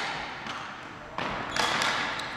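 Ball hockey sticks and ball clacking on a wooden gym floor, sharp knocks ringing in the hall. One comes about a second in, and a louder cluster follows near the end.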